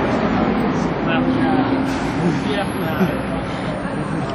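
Steady city street noise of vehicle traffic, with people's voices mixed in.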